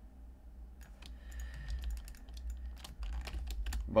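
Irregular light keystrokes on a computer keyboard, sparse at first and busier in the last second.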